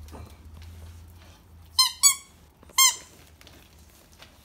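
A squeaky toy ball squeezed three times, giving three short, high squeaks in quick succession, the first two close together and the third a little later.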